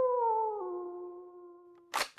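Wolf howl sound effect tailing off: a long held note that drops in pitch about half a second in and fades away. Near the end, two short sharp noise bursts about a quarter second apart.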